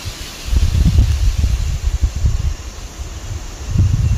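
Wind buffeting the microphone: an uneven low rumble that gusts up about half a second in and runs on in waves, with a faint hiss of moving air and leaves above it.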